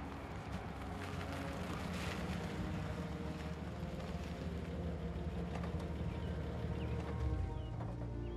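An old army staff sedan's engine running steadily as the car rolls up to the house and stops, with faint birdsong near the end and soft music underneath.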